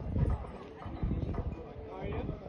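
Hoofbeats of a horse cantering on an arena's sand footing, with people talking nearby.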